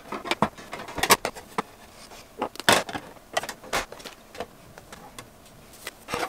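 Makeup compacts and palettes clicking and clacking against a clear acrylic drawer as they are set back into its compartments: about a dozen irregular sharp clicks, loudest around a second in and just before three seconds.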